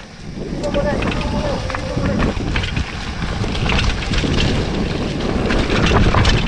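Mountain bike rolling downhill over a dirt and leaf-littered trail: tyre rumble and wind buffeting the camera microphone, with the bike's frame and parts rattling and clattering over the rough ground, the clatter busier in the second half.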